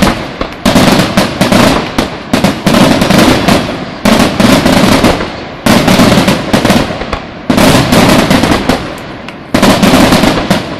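Fireworks finale barrage: aerial shells bursting in rapid succession, loud dense bangs. They come in waves every second or two, each wave starting sharply and fading before the next.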